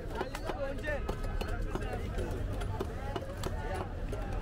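Men's voices chattering in a busy market, with irregular sharp knocks and taps as big boal fish are cut with a knife and an upright boti blade.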